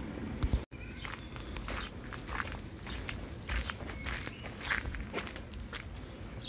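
Footsteps of a person walking, irregular steps roughly two a second, with a momentary cut in the sound just under a second in.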